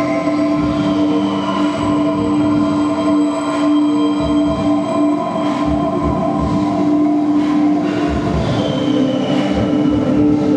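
Soundtrack of a projection-mapped installation: layered sustained drone tones with high squealing glides, joined about four seconds in by irregular low thumps.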